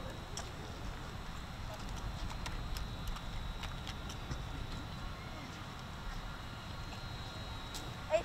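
Wind rumbling on the microphone, with scattered sharp clacks of cadets' hands slapping and catching drill rifles during a rifle drill routine.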